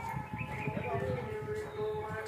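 A slow melody of held notes that slide from one pitch to the next, like a voice singing, with an irregular low rumble beneath it.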